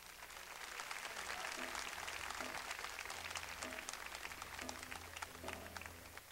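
Audience applauding, swelling over the first second and tapering off toward the end, with faint notes of the next piece of music starting underneath.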